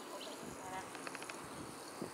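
Quiet outdoor ambience with a faint buzz and a few short high chirps about a second in.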